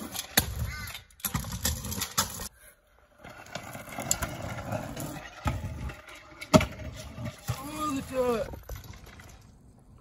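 Stunt scooter wheels rolling and clattering on a bumpy concrete bank, with sharp knocks from tricks and landings, the loudest about six and a half seconds in. Voices shout just after it.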